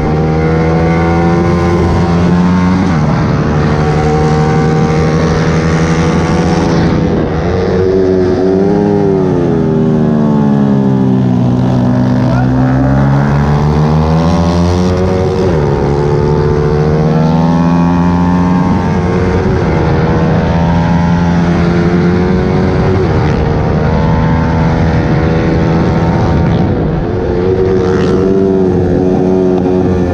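Yamaha R15 V3's 155 cc single-cylinder engine at high revs, heard from the rider's seat with wind rush. The revs fall away deeply around eight to twelve seconds in as the bike slows for a corner, then climb hard again, with further drops and rises through the rest of the lap.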